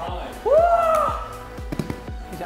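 A person shouting a short, high 'woo!' cheer over background music; the shout rises and then falls in pitch.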